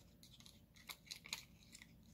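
Faint scattered clicks and light rustling, several close together about a second in, from picking small self-adhesive rhinestone gems off their sheet with the tip of a pair of scissors.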